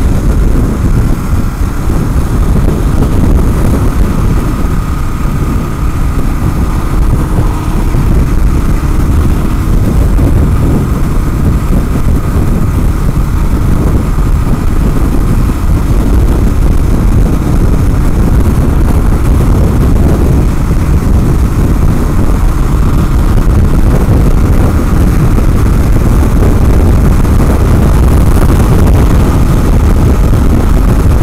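Loud, steady wind buffeting over the camera microphone on a 2016 Kawasaki KLR650 single-cylinder motorcycle cruising at freeway speed, with the engine running at constant speed underneath.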